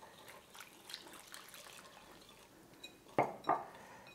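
Water poured from a small glass cup into a glass bowl of rice flour as a wire whisk stirs it in, faint. Two short, louder clinks against the glass a little over three seconds in.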